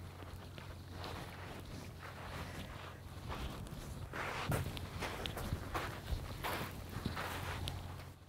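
Footsteps crunching on a shingle beach, about two steps a second, getting louder from about three seconds in as the walker comes closer, over a steady low rumble.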